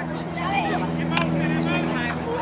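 A steady low motor hum, like an engine running nearby, with voices calling out across the field over it.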